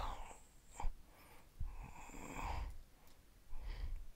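A man breathing, with one long breath out about halfway through and a fainter one near the end.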